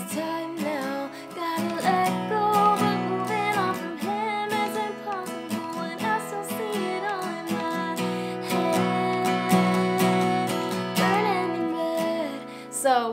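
A woman singing along to a capoed Fender Sonoran acoustic guitar, strummed in a steady down-down, up-up, down-up pattern through the bridge chords (Fsus2, Gsus4, Am, C).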